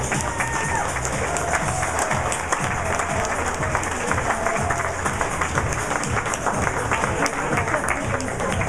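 Audience applauding over recorded music.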